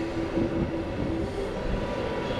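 Steady low rumble of vehicle noise with a faint hum coming and going.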